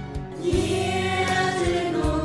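Music with voices singing, choir-like, over a steady instrumental accompaniment; the singing comes in about half a second in.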